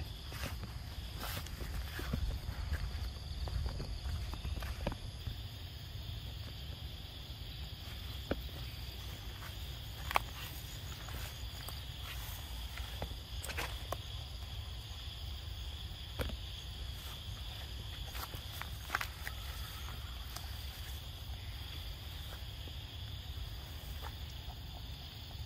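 Outdoor ambience: a steady high-pitched insect chorus over a low rumble, broken by scattered sharp clicks and snaps.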